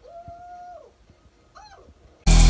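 A woman's voice, faint and thin through a TV speaker, holds one long note that falls away, then gives a short rising-and-falling call near the end.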